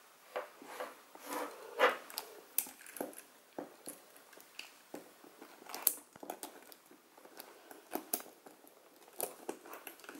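Hands handling a black leather Louis Vuitton Capucines BB handbag and its shoulder strap: irregular light clicks and taps of the metal hardware and clasp, with leather rustling and a few sharper knocks.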